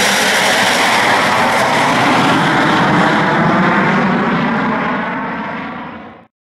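Cirrus SF50 Vision Jet's single turbofan engine at power on its takeoff run: a loud, steady jet roar with faint shifting whine lines. It dies away near the end.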